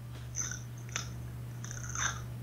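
A steady low hum, with a few faint short hisses and a soft tick about a second in.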